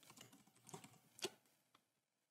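A few faint computer keyboard keystrokes, about a second in, over near silence: the cluster's name is being typed.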